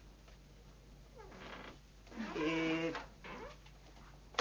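A single drawn-out, meow-like call about two seconds in, lasting under a second, with a fainter rising call just before it.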